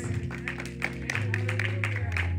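Held chords and bass notes from the church band, changing chord about a second in, with scattered hand claps from the congregation giving a clap of praise.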